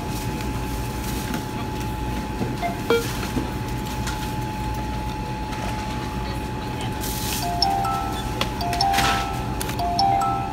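Checkout-area store ambience: a low steady hum with a constant high tone and faint music. Near the end come a few short electronic beeps of different pitches, with a couple of brief bursts of hiss.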